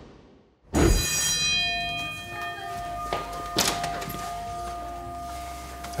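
TV scene-transition sound effect: a sudden, bell-like hit that rings out, followed by a held tone with a few sharp knocks underneath.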